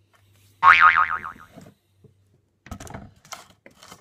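A cartoon-style 'boing' about a second in, about a second long, its pitch wobbling up and down and falling away. It is followed near the end by a few light clicks and knocks from a plastic oil bottle being handled.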